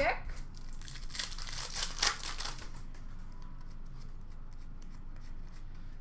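Trading cards being handled and sorted into stacks, a papery rustling and scraping that is strongest in a few bursts between about one and two and a half seconds in, then fainter.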